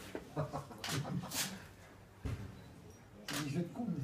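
A still camera's shutter clicking a few times, with low murmured voices around it.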